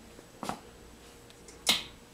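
Two short, sharp clicks over a faint room tone: a small one about half a second in and a louder one near the end.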